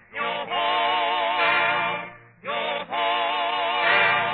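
A vocal group singing long held notes with vibrato, in phrases of about two seconds with short breaks between them: a radio show's closing theme.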